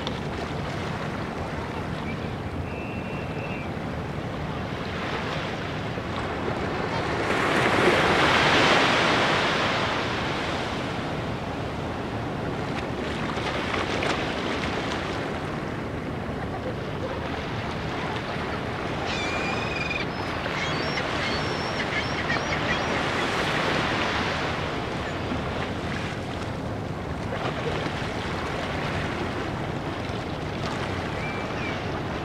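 Small bay waves washing up onto a sandy shore, each wash swelling and fading every few seconds, with the biggest one about eight seconds in.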